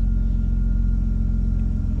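2005 Ford Escape's 3.0-litre V6 idling steadily while it warms up, heard from inside the cabin as a low, even engine note.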